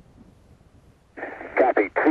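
Faint radio hiss, then about a second in a voice over the shuttle's air-to-ground radio loop, thin and narrow like a radio, answering the Zaragoza abort-site call.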